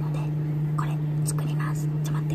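A woman whispering softly, over a steady low hum.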